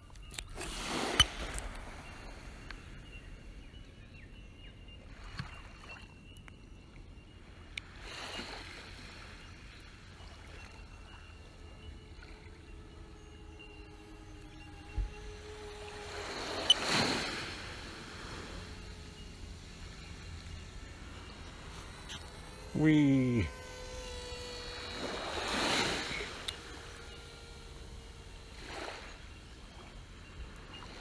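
Quiet outdoor ambience with a few soft whooshes rising and falling several seconds apart, and a brief louder sound sweeping up in pitch about 23 seconds in.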